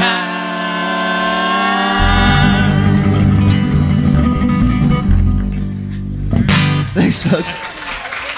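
Live acoustic string band holding a closing chord: sung harmony over guitars, fiddle and mandolin, with the upright bass coming in about two seconds in. A final strum near the end cuts the chord off.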